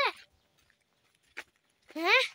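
A goat bleating once right at the end, a short call rising in pitch, after a near-quiet stretch broken by a single click.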